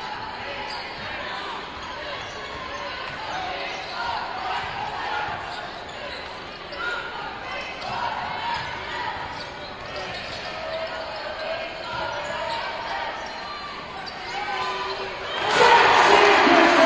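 Basketball game in a gym: a ball dribbling on the hardwood court under a steady hubbub of indistinct voices from players and spectators. Near the end the crowd breaks into sudden loud cheering.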